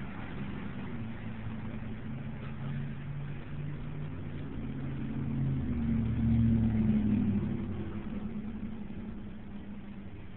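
An engine running with a low, steady hum that grows louder about six seconds in and then eases off again.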